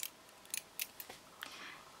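A few light, sharp metallic clicks as silver ring splints on the fingers tap against each other while the hand flexes.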